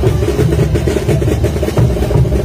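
A live street band playing dance music, with a bass drum and other percussion beating a steady rhythm under sustained melody tones.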